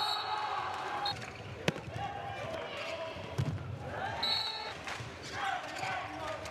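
Handball being played in a large, nearly empty hall: players shouting to each other and the ball bouncing on the court, with one sharp smack a little under two seconds in.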